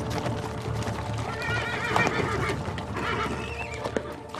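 A horse whinnies with a wavering call about a third of the way in and again more briefly near the end, over hooves clip-clopping and background score music.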